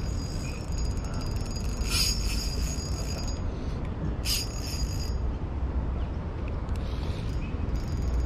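A spinning reel being cranked while a hooked fish is played, its gears giving a fine high ticking whir, with a low wind rumble on the microphone. Two short brighter bursts come about two and four seconds in.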